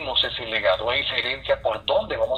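A person speaking without a break, the voice sounding thin and narrow like radio or phone audio.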